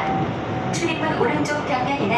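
Gyeongchun Line commuter electric train running at speed, heard from inside the carriage as a steady rumble of wheels on rail, with people's voices over it.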